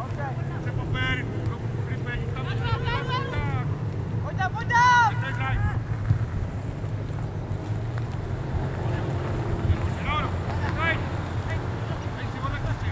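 Voices shouting calls across a football pitch: several shouts in the first few seconds, the loudest about five seconds in, and a few more near the end, over a steady low rumble of wind on the microphone.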